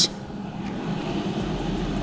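Rosenstein & Söhne 4.5 L hot-air fryer running at 200 °C, its fan giving a steady rush of air with a faint low hum. It is a quiet machine, measured at just over 50 decibels and 58–59 at the rear air outlet.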